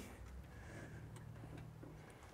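Faint, near-quiet background with a low steady hum and a few faint ticks.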